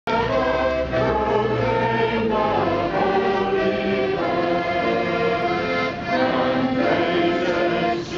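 A children's school choir singing outdoors, holding notes and moving from note to note in a slow melody.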